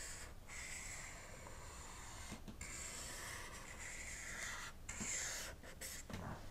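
Felt-tip marker drawn across a paper flip-chart pad: a faint, steady rubbing in long strokes, broken by a few brief pauses where the pen lifts off the paper.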